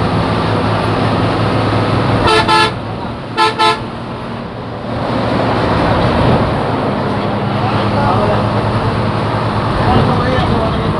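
Bus horn giving two quick double toots, about two and three and a half seconds in, over the steady drone of the bus engine heard from inside the cab; the engine noise swells again about halfway through.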